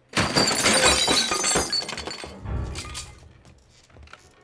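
A window pane shattering in a loud, sudden crash, the breaking glass falling away over about two seconds. A heavy thud follows about two and a half seconds in.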